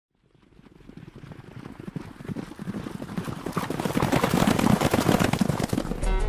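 Galloping hoofbeats of a field of racehorses, a dense run of irregular strikes that grows steadily louder from near silence as they approach.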